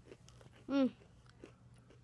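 Mouth chewing a Swedish Fish-flavoured Oreo sandwich cookie, with soft scattered clicks and crunches. A hummed "mmm" of enjoyment comes about two-thirds of a second in and is the loudest sound.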